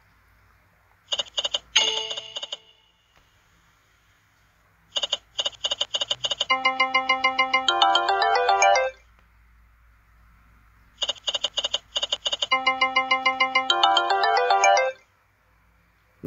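Sound effects of the Montezuma online video slot game: a short burst of rapid clicks as the reels spin and stop, then twice a run of rapid clicks followed by a pulsing chiming chord and a rising run of electronic notes, the game's win jingle.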